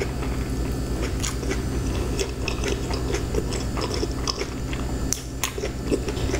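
Close-miked chewing of a mouthful of BBQ pizza, with many short wet mouth clicks and smacks, over a low steady hum.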